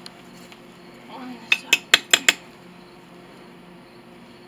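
Five quick, sharp metallic clinks, metal striking metal with a short ring, packed into under a second about a second and a half in, as a tool is worked against the hot mold.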